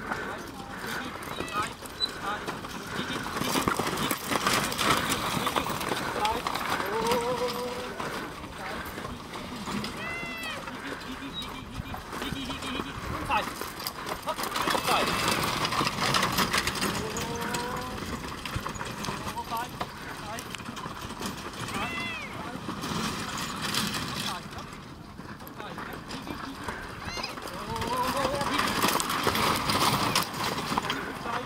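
A four-in-hand team of horses pulling a marathon carriage through an obstacle: hooves and carriage wheels on soft ground, with repeated shouted calls that rise and fall in pitch, loudest in several waves as the team passes.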